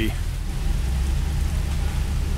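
Steady rain falling, with a continuous low rumble underneath.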